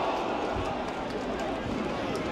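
Crowd noise at a small football ground: spectators' voices talking and calling out in a steady hubbub, with a few faint short knocks.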